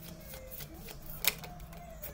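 Tarot cards being handled and drawn from the deck: a scatter of light clicks and card flicks, with one sharper snap a little past a second in.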